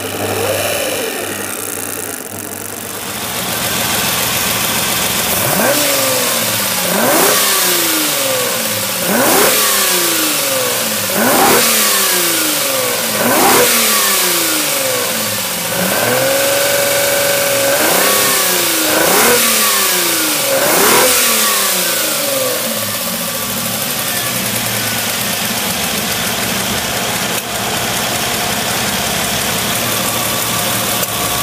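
Ferrari 250 GTO's carburetted 3-litre Colombo V12 being blipped during a tune-up: about every two seconds the revs rise sharply and fall back slowly, with one rev held for a second or two about halfway through. Near the end it settles into a steady idle.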